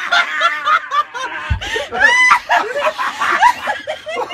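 People laughing in short, choppy peals with some high-pitched giggling, and a single low thump about a second and a half in.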